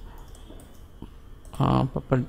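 A few faint computer mouse clicks over a low steady hum, then a man starts speaking near the end.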